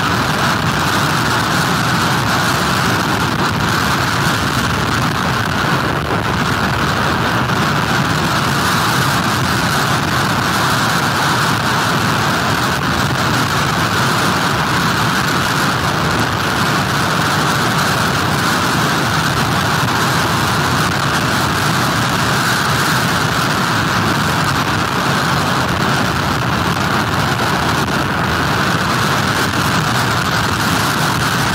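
Steady, unbroken roar of storm wind and heavy surf during Hurricane Florence, holding at one level throughout.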